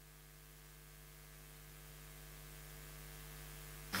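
Faint, steady electrical mains hum in the church's sound system, growing slightly louder over the few seconds.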